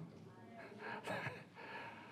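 A man's quiet, breathy laughter, with a slightly louder breath about a second in.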